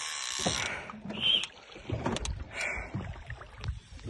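Water splashing and sloshing beside a small aluminium fishing boat, with a hiss at the start and scattered knocks on the hull, as a hooked redtail catfish (pirarara) lies thrashing at the surface alongside.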